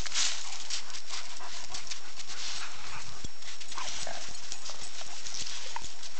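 Dogs moving about on hard, frozen gravelly ground: an irregular patter of paw steps and scuffs.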